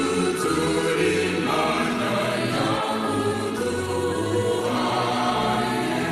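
A choir singing a sacred hymn with long held notes.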